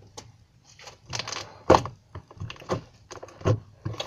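Homemade slime being squished and slapped on a tabletop by hand: a quick, irregular run of wet slaps and squelches, the loudest a little before the middle.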